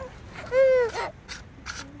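A single high-pitched, drawn-out vocal exclamation that rises and falls in pitch, about half a second in, followed by a couple of faint short clicks.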